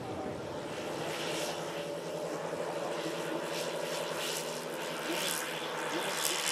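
Four-engine RC scale model DC-6B running its engines and propellers at takeoff power during its takeoff run: a steady multi-tone propeller hum that grows a little louder.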